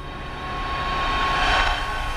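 Swelling whoosh of noise with a steady tone in it, building to a peak about one and a half seconds in and easing off: the opening sound effect of an ambient soundtrack.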